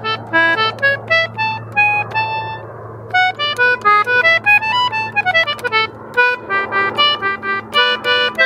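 Concertina playing a simple melody line in short phrases over a steady held low drone note: trying out a first phrase for a new folk jig.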